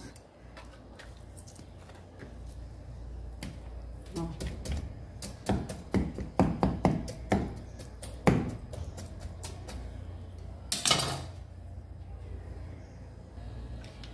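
Kitchen knife cutting through a partly frozen pork loin, its blade knocking and tapping irregularly on a wooden cutting board, with one louder clatter about eleven seconds in.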